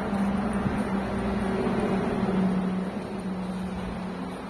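Range Rover Sport's 3.0 V6 engine idling with the bonnet open, a steady even hum.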